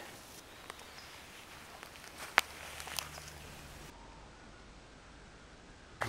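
Faint outdoor ambience with two sharp clicks, about two and a half and three seconds in.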